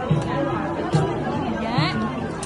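Chatter of several people talking around the microphone, with a few soft low thuds about once a second.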